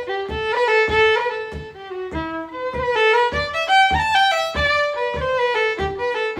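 Solo fiddle playing a slow-paced Irish traditional melody, one bowed note after another, with a steady low thump keeping time under it about three times a second.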